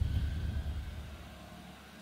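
A deep low rumble fading away steadily, with a faint thin tone above it.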